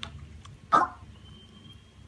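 A piglet slurping milk from a metal bowl: small wet clicks, with one loud, short burst a little under a second in.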